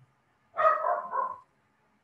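A single loud, high call of about a second, in two parts, starting about half a second in.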